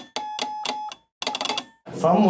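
A short edited-in sound effect marking a replay: rapid clicking with a steady bright ringing tone over it, breaking off for a moment about halfway and then starting again.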